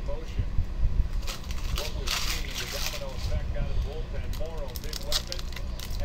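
Foil trading-card pack wrappers crinkling and tearing as packs are ripped open by hand, in several bursts, the loudest about two seconds in.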